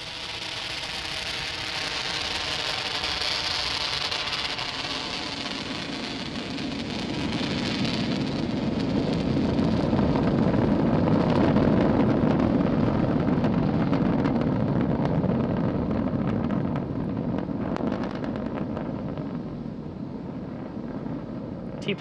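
Falcon 9 Block 5 first stage's nine Merlin 1D engines during ascent, heard as a steady rushing rumble. It swells to its loudest about halfway through, then eases off as the rocket climbs away.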